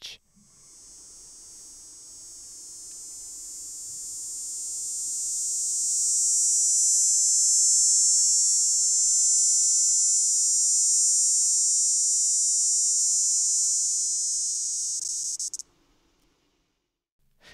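Male northern dog day cicada (Neotibicen canicularis) singing: one long, very high-pitched buzz that swells gradually over the first several seconds, holds steady, then cuts off suddenly near the end.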